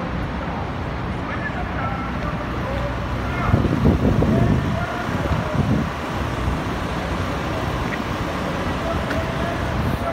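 Busy city street ambience: a steady rumble of road traffic with the voices of a crowd mixed in, swelling briefly a few times.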